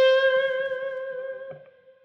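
Electric guitar holding a single note bent up from the seventh to the root, ringing at a steady pitch and fading away. A small click comes about one and a half seconds in as the note dies out.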